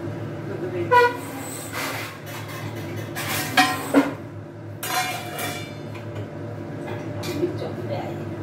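Kitchen work at a stove: metal utensils and steel pots knocking and clinking a few times, loudest about three and a half and four seconds in, over a steady low hum.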